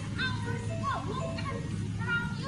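Young children chattering and calling out, with background music.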